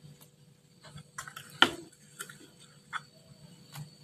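A handful of scattered taps and clicks of a spoon and metal spatula against a wok as seasoning is added and stirred in, the sharpest tap about one and a half seconds in.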